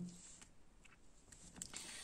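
Near silence, with faint rustling of oracle cards being picked up and moved across a cloth-covered table near the end.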